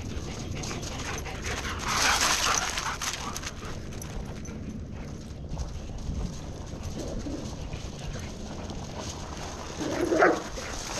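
Dogs whining and yipping while running and playing on gravel. There is a brief louder scuffle about two seconds in and a sharper yip right at the end.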